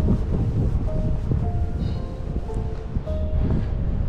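Wind rumbling on an action camera's microphone in a snowstorm, with music playing faintly over it.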